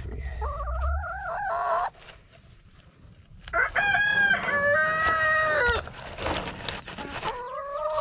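Rooster crowing three times: a short crow about half a second in, a longer, louder crow around the middle, and another starting near the end.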